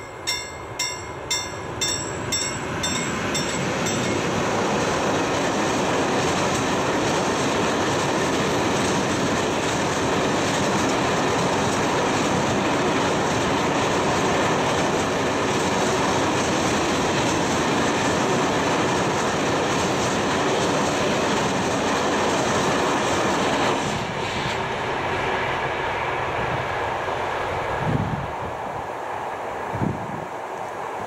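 Level-crossing warning bell ringing about twice a second, soon drowned as a long electric-hauled freight train of covered wagons rolls past with steady, loud wheel-on-rail noise. About 24 s in, the noise drops as the train clears, and near the end come a couple of knocks as the crossing barriers begin to rise.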